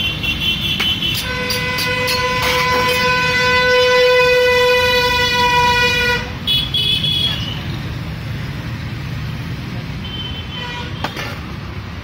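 A road vehicle horn held for about five seconds, starting about a second in, over steady road traffic; shorter, higher-pitched horn toots come later.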